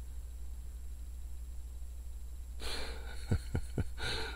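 Steady low hum of a car cabin at a standstill. Near the end a soft breathy rush of noise comes in, with a few faint low thumps.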